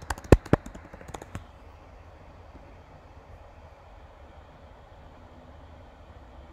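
Typing on a computer keyboard: a quick run of about half a dozen keystrokes in the first second and a half, then only a low steady room hum.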